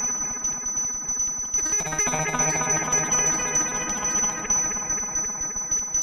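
Serge-format modular synthesizer patch playing a dense run of many quick pitched notes over a steady high whistling tone. A low bass note comes in about two seconds in.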